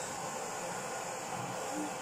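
Vacuum cleaner running with a steady hiss as its hose nozzle is drawn through a cat's fur.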